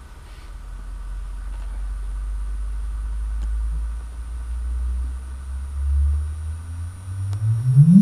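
Sonified LIGO gravitational-wave signal from two merging neutron stars, played through loudspeakers: a low hum that slowly rises in pitch for several seconds, then sweeps sharply upward into a chirp and stops right at the end. The final upward sweep marks the moment the two neutron stars merge.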